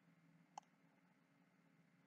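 Near silence with a single faint computer-mouse click about half a second in.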